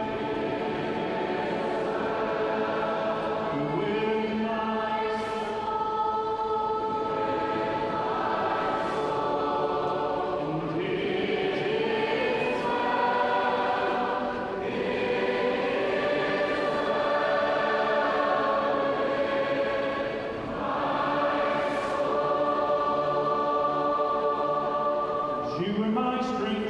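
A large crowd singing a worship song together as one big choir, in long held phrases with brief breaks between lines, in a tall multi-storey atrium.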